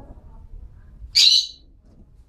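A caged hwamei (melodious laughingthrush) gives a single short, loud, high-pitched call about a second in.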